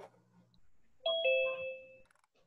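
A two-note electronic chime, a falling ding-dong about a second in that rings on for about a second: a video-call app's alert chime.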